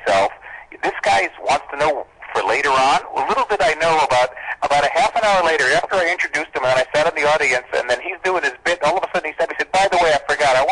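Speech only: men talking in a radio interview.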